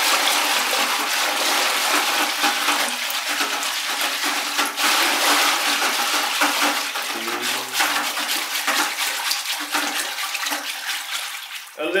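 Liquid ceramic glaze being stirred and sloshed in a plastic bucket, a continuous churning, splashing swish.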